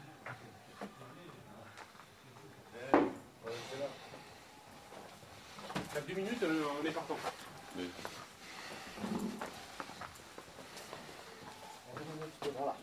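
A door in a small tiled room shuts with a single sharp bang about three seconds in, with a few lighter knocks and clicks around it.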